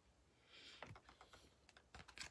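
Faint handling of tarot cards on a wooden table: a brief sliding rustle about half a second in, then a string of light, irregular clicks and taps.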